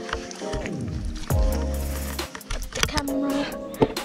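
Background music: a lo-fi hip-hop style track whose deep bass slides downward about a second in and then holds, over steady sustained chords and scattered percussive strokes.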